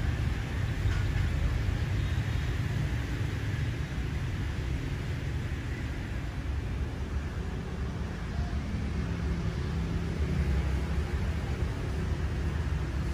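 Steady outdoor ambience: a low, uneven rumble under a light hiss, with no distinct events.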